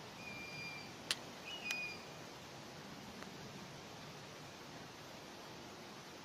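Faint outdoor background with two short, thin whistled bird calls in the first two seconds, and a couple of light clicks between them.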